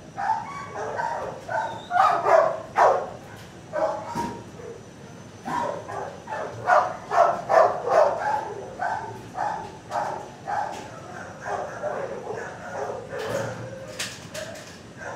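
Dogs barking in a shelter kennel, a steady run of short barks several a second, loudest a couple of seconds in and again about seven to eight seconds in.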